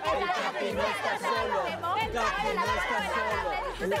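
Several people talking and shouting over one another, with music playing underneath.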